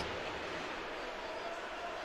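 Steady ice hockey arena ambience: an even background hiss of the rink and crowd, with no distinct puck or stick hits.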